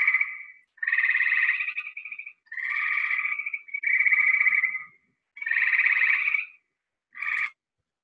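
Gray treefrog calling: a series of trills near 2 kHz, each about a second long with short gaps between, five of them plus a brief one near the end.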